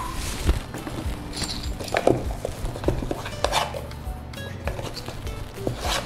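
A few scattered clinks and knocks of metal measuring spoons and ingredient containers handled on a kitchen counter, over soft background music.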